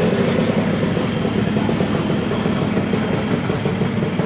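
Scooter engines idling, a steady fast pulsing that holds throughout.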